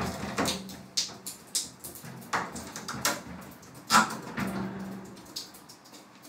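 A glass shower door sliding open, then irregular light knocks and clicks, the loudest about four seconds in, over a low steady hum.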